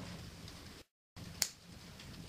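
Flush cutters snipping a tab off a white plastic SG90 servo horn: one sharp snap about one and a half seconds in.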